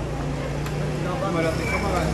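Town-street ambience: indistinct chatter of passers-by over a steady low hum of a running vehicle engine.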